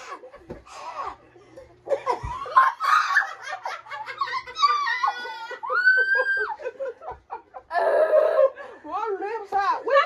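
Two women laughing hard while their mouths burn from spicy noodles, in quick bursts of laughter with a few high-pitched squealing laughs midway.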